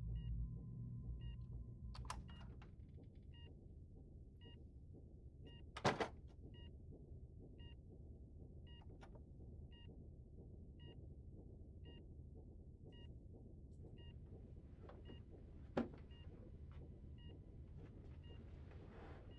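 Medical monitor beeping steadily about once a second, each beep a short, soft two-note tone. A few sharp clicks sound over it, the loudest about six seconds in, and a steady tone with a low rumble fades out in the first two seconds.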